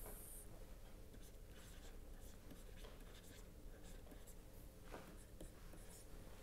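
Faint, scattered taps and scratches of a stylus writing on a tablet screen, over quiet room tone.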